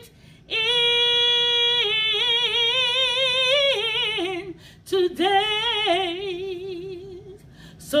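A woman singing a gospel song unaccompanied, in two long phrases of held notes with vibrato and short pauses for breath between them.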